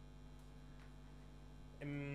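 Steady low electrical mains hum with room tone. Right at the end a man's voice starts a drawn-out, even-pitched "eh".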